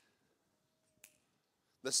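Near silence, with a single brief sharp click about a second in; a man's voice starts speaking near the end.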